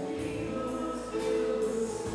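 Live band playing with sung vocals: held keyboard and guitar chords over drums keeping a steady beat on the cymbals.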